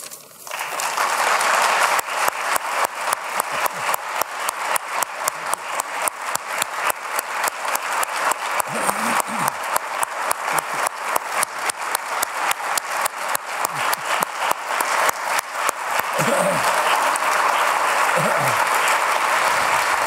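Audience applauding, swelling over the first two seconds. For most of it the claps fall into an even rhythm, with a few faint voices heard through it.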